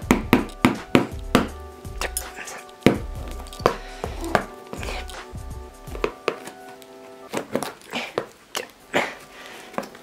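A metal spoon stabbing and scraping at the packing tape and cardboard of a box: a rapid run of sharp jabs and tearing. Background music plays under it for roughly the first two-thirds.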